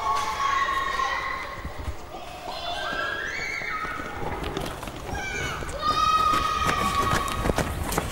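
Children's voices shouting and calling out, with several long, high, drawn-out cries, some rising in pitch.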